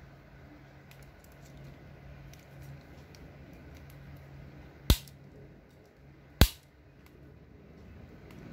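MCC mini bolt cutter snipping through steel B40 chain-link fence wire: two sharp snaps about a second and a half apart, the first about five seconds in, each one the jaws cutting clean through the wire.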